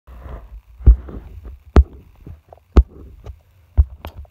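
Four dull thumps about a second apart, with soft rustling between them: handling noise from the phone that is recording.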